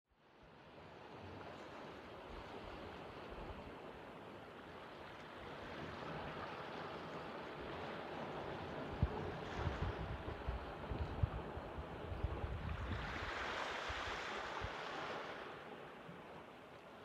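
Sea surf washing against a rocky shore, fading in at the start, with a louder rushing wash of a breaking wave near the end. Wind gusts buffet the microphone with low rumbles in the middle.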